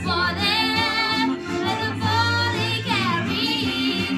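A solo singer's voice singing a show tune into a microphone over instrumental accompaniment of steady bass notes and chords, with vibrato on the held notes.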